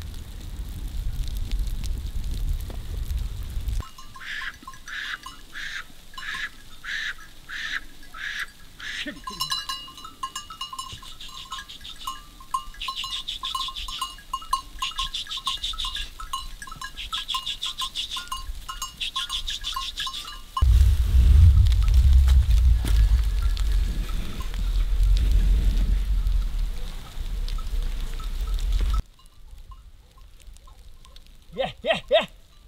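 Sheep bells: first a single bell clanking in a steady rhythm, about three strokes every two seconds, then many bells jingling together from the flock. A low rumble opens the stretch and comes back louder after the jingling stops.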